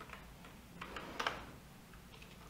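Computer keyboard keys being pressed: a few faint clicks, the loudest cluster about a second in.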